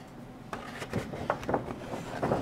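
Handling noise as a hand-held camera is carried around: a run of irregular light knocks and rubbing, starting about half a second in.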